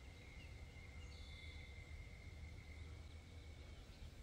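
Faint outdoor background: a low rumble under a steady thin high tone, with a brief higher note from about one to two seconds in.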